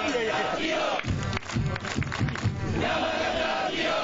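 Football supporters' section chanting in unison, with held sung notes and rhythmic clapping.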